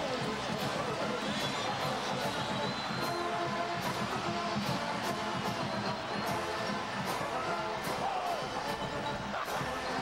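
Marching band playing brass music with a steady bass-drum beat, over stadium crowd noise.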